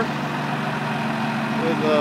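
Turbocharged 12-valve Cummins inline-six diesel in a 1978 Chevy K60 idling steadily.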